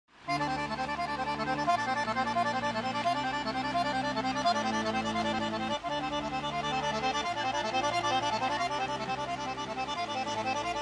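Piano accordion playing a quick melody over bass chords that change about every second and a half.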